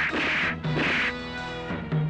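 Fight-scene film score with two dubbed punch sound effects in the first second, short noisy hits over the sustained music.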